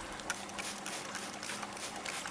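Hand pump spray bottle misting water onto soil, a faint hiss with light clicks from the trigger.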